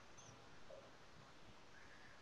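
Near silence: faint room tone, with a couple of tiny faint blips.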